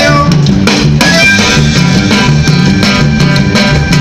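Live band playing loud amplified music, with accordion, guitars, electric bass and drum kit, and a steady bass and drum beat.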